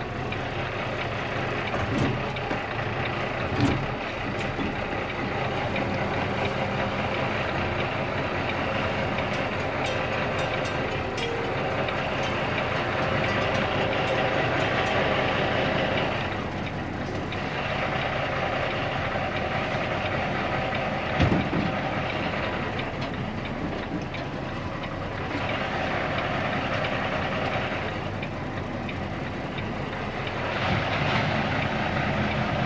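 Tractor-trailer diesel engine running, heard from inside the cab as the truck moves slowly, its level swelling and easing with the throttle. A few short knocks sound about two, four and twenty-one seconds in.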